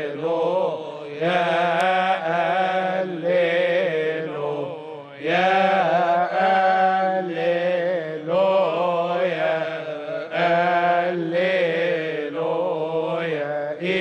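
A Coptic Orthodox deacons' choir chanting a liturgical hymn in unison, the melody moving over a low note held steadily underneath, with brief breaths between phrases.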